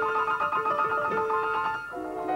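Grand piano being played, notes struck in a steady flowing line, thinning out briefly near the end.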